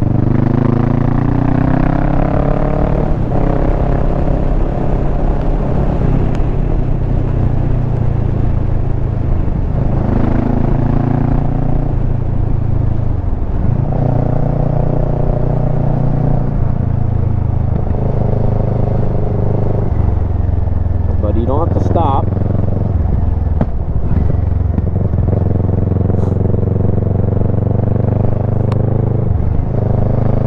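Kawasaki Versys 650's parallel-twin engine running under way. Its pitch climbs as it accelerates and drops back several times with gear changes and roll-offs of the throttle.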